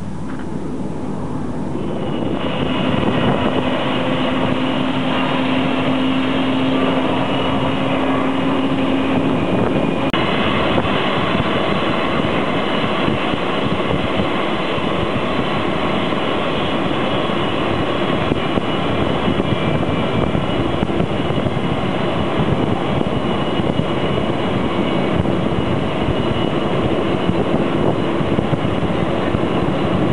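Jet airliner engine noise, loud and steady. A steady low tone runs through the first several seconds, and the sound changes abruptly about ten seconds in.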